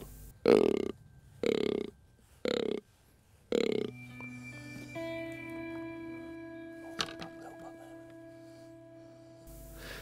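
Hand-held fallow buck grunter blown four times, short belching groans about a second apart imitating a rutting fallow buck, to bring deer in. Background music with held tones follows from about four seconds in.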